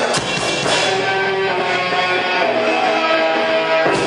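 A live rock band: electric guitar playing held notes over a drum kit, with a sharp drum or cymbal hit just after the start and again near the end.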